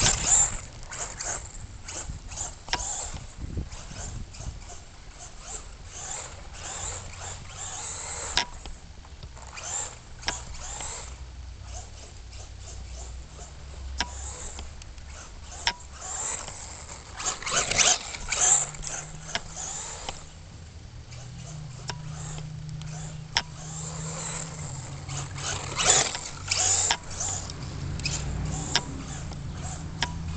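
Brushless RC buggy (3300kv 3652 motor, 60 A ESC, 3S LiPo) driving over grass and dirt: irregular bursts of motor and tyre noise as it accelerates, with many sharp clicks and knocks from the chassis bouncing. The loudest bursts come about halfway through and again near the end, over a low steady hum.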